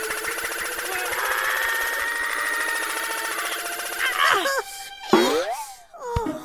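Cartoon sound effect of a propeller machine running with a rapid rattling pulse, about ten beats a second. About four seconds in, squeaky cartoon character voices cut in, then a sweeping sound falls and rises in pitch near the end.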